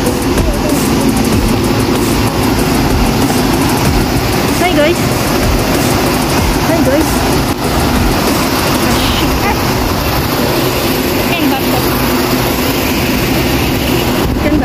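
Steady city street noise, a constant traffic rumble, with faint voices of people passing by.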